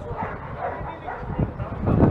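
Short shouted calls and voices of players on the pitch during play.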